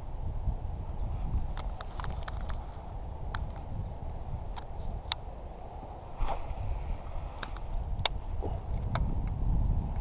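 Handling noise: a low uneven rumble with about ten scattered sharp clicks and light knocks.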